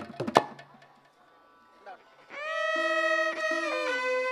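The last few hand-drum strokes of a percussion passage in the first half-second, then a brief hush, after which two violins come in with long bowed notes that step down in pitch.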